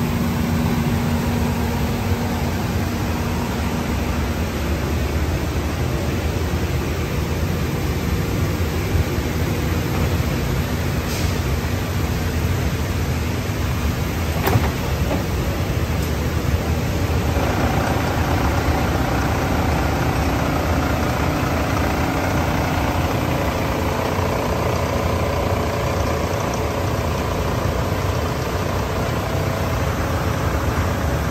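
Steady hum of running industrial paper-cutting machinery, with one sharp click about halfway through. A little after halfway the hum changes and a higher whine joins it.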